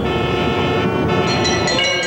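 A steady low rumble under several sustained tones. About halfway through, bells start chiming over it.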